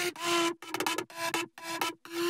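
Sampled synth lead made in Serum, playing a phrase of short separate notes, about two to three a second, mostly on one repeated pitch.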